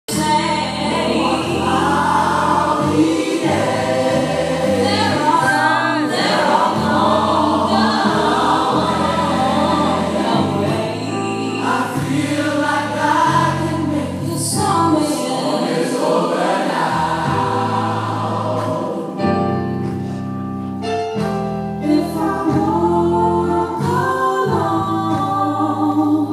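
Gospel choir singing over an instrumental backing with a steady bass line, a continuous song without pause.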